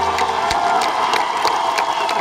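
Concert crowd applauding and cheering, with a dense patter of hand claps. The band's last sustained low note cuts off sharply about half a second in, leaving only the applause.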